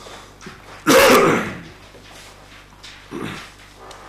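A person sneezing once, loudly and close to a microphone, about a second in. A smaller short vocal sound follows about three seconds in.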